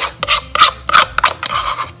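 A spoon scraping sour cream out of a plastic measuring cup: a quick run of short, loud scraping strokes.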